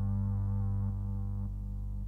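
Sustained low drone from analog synthesizers, a steady chord of stacked tones. About a second in, part of the sound cuts out, and more drops away half a second later, leaving a thinner, quieter hum.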